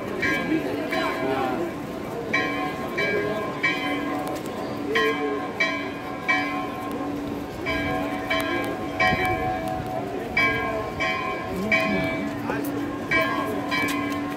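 Hindu temple bells struck over and over, several pitched tones ringing on together, about one stroke every half second in short bunches of two or three with brief pauses, over crowd chatter.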